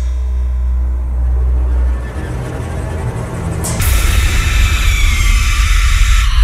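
Radio show bumper music between segments: a deep, steady low drone, then a bright whooshing swell that comes in suddenly about four seconds in.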